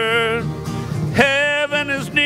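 A man sings a country gospel song to strummed acoustic guitar. A held sung note ends about half a second in, the guitar carries on alone briefly, and the voice comes back in a little over a second in.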